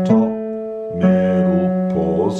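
Digital piano, left hand playing a slow broken D chord: a note struck just after the start and a slightly lower one about a second later, each left to ring.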